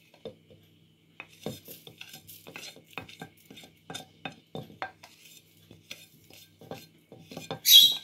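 A spatula scraping and tapping against a bowl as nuts, raisins and seeds are tipped into a plastic blender jug: irregular light clicks and knocks, with a short, louder hiss near the end.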